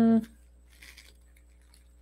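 A short hummed "hmm" at the very start. Then it goes quiet except for a faint, brief rustle of collage paper being handled, about a second in.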